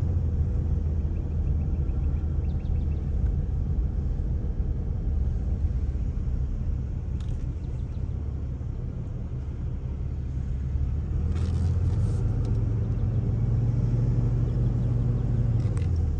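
Car's engine and tyre noise heard from inside the cabin while driving slowly, a low steady rumble that eases off about halfway through as the car slows and stops, then builds again as it pulls away.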